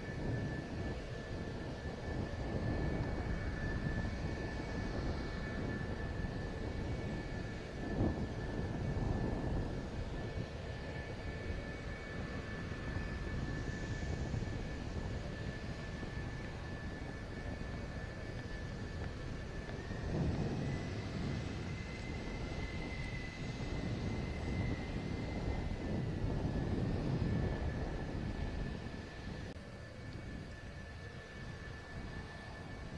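F-4EJ Kai Phantom II jets with their J79 turbojets idling on the ground: a steady roar under a constant high whine. A second, slightly higher whine joins for a few seconds past the middle, and there is one brief knock about eight seconds in.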